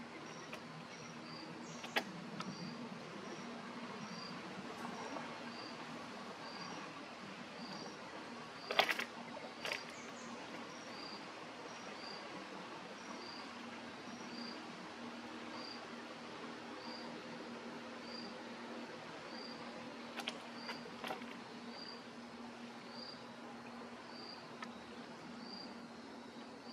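Steady outdoor background hiss with a short, high chirp repeating about once a second, and a few sharp clicks, the loudest about nine seconds in.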